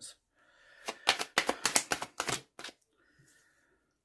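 A tarot deck being shuffled by hand: a quick run of sharp card snaps lasting about a second and a half, starting about a second in.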